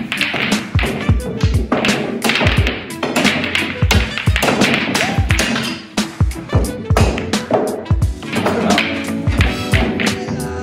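Background music with a steady, driving beat, over sharp clicks of pool balls struck by cue tips and knocking against each other and the cushions.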